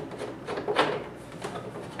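Soft scrapes and small knocks of a hand loosening the thumb screws on an ice machine's plastic inner panel, with a short scrape just under a second in.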